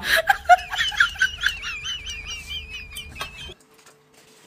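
High-pitched laughter: a quick run of giggling bursts, then a long wavering squeal that cuts off suddenly about three and a half seconds in.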